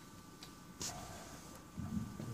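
Two faint clicks, about half a second and just under a second in, from the buttons of a handheld portable TENS unit being pressed while its settings are adjusted, over quiet room tone.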